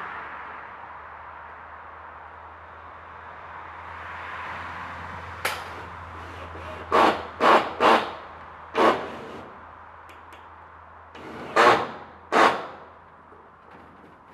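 Corrugated metal roofing being worked on by hand: a run of short, sharp sounds from the sheet, four close together and then two more near the end, over a steady background hiss.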